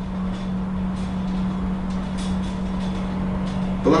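Steady low room hum: a constant tone with a low rumble beneath it, with a few faint ticks.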